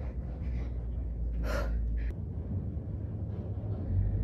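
A woman's single loud, breathy gasp or exhale about a second and a half in, with a shorter breath shortly after, over a low rumble of movement close to the microphone.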